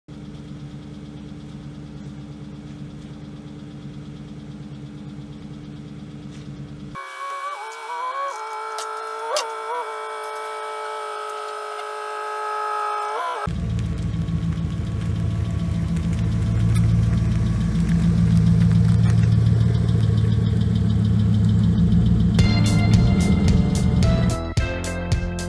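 Background music: a steady bass-heavy track whose low end drops out for several seconds in the middle, leaving gliding synth tones. The bass comes back and builds in loudness, and a sharp rhythmic beat starts near the end.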